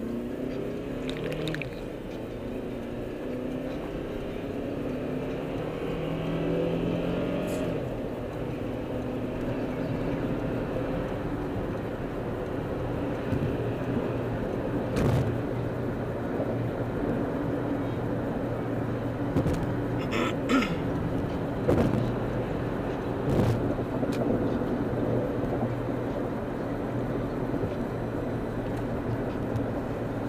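Car engine and road noise heard inside the cabin. The engine's pitch rises as the car accelerates onto the freeway, then settles into a steady drone at cruising speed. A few sharp knocks or rattles come through the middle.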